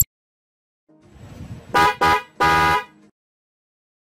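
Horn sound effect for a logo sting: a short rising swell, then two quick honks run together and a longer third honk about two seconds in.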